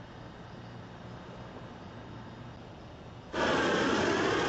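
A quiet, steady hiss with a faint low hum, then, about three seconds in, a loud, steady gas torch flame noise sets in suddenly.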